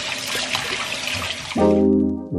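Kitchen tap running into a metal sink in a steady rush. The water stops just under two seconds in, as music with low brass notes starts.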